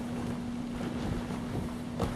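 Wind buffeting the microphone in a rough, uneven rumble, over a steady low hum.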